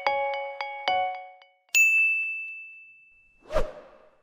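Logo intro jingle: a few quick bell-like mallet notes, about three a second, dying away, then a single bright chime that rings out for over a second, and a short swoosh near the end.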